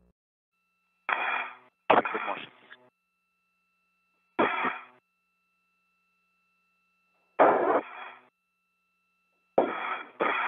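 Short, clipped bursts of voice over the spacewalk radio loop, narrow-band and partly unintelligible, five of them with pauses between. A faint steady two-pitch tone hums beneath them.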